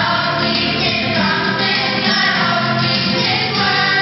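A group of children singing into microphones, with instrumental accompaniment underneath.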